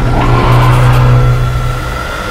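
Horror-trailer sound design: a loud low drone under a thin steady high tone, with a rising glide about a quarter second in.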